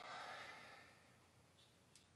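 A soft sigh, one breath out that fades away within about a second, then near silence.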